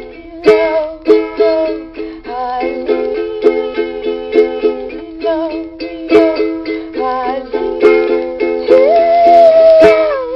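Nylon-string ukulele strumming a bright, upbeat chord pattern in a steady rhythm, with picked melody notes that slide in pitch and a long held note near the end.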